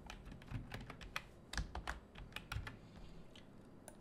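Typing on a computer keyboard: about a dozen short, irregular key clicks, thinning out in the last second.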